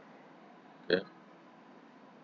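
Quiet room tone, broken about a second in by one short spoken word, "okay", from a man's voice.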